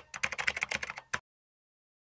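Keyboard-typing sound effect: a quick run of light key clicks that stops a little over a second in, matching on-screen text being typed out letter by letter.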